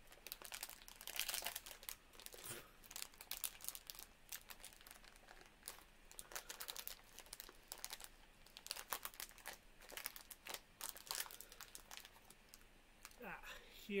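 Plastic snack packet crinkling and crackling in the hands in irregular bursts as it is struggled open.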